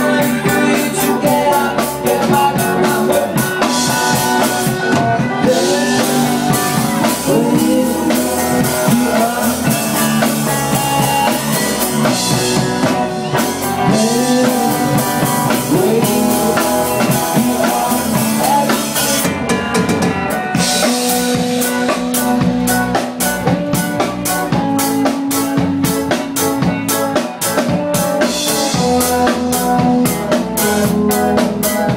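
Live rock band playing an instrumental passage: a drum kit keeps a steady beat on bass drum and snare under keyboards and electric guitar, with a lead line that slides up and down in pitch.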